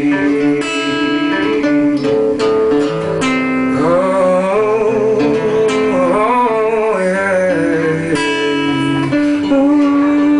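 Live song: acoustic guitar strummed and picked, with a man singing over it.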